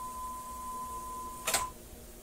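A steady 1 kHz reference tone playing back from a Sony TC-765 reel-to-reel deck off a Magnetic Reference Laboratory calibration tape, used to set the right channel's output to 0.44 volts. About a second and a half in, a sharp clunk as the tape transport is stopped, and the tone cuts off.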